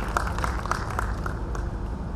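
Scattered applause from a seated audience, a handful of people clapping irregularly and thinning out about one and a half seconds in, over a steady low hum from the hall's sound system.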